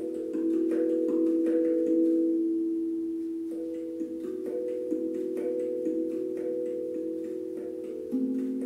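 Steel handpan tuned to E Romanian minor (E3 A3 B3 C4 D#4 E4 F#4 G4 A4 B4), played with the fingers: a slow run of struck notes that ring on and overlap, with light taps between them. Near the middle the strikes pause for about a second and the notes sustain and fade.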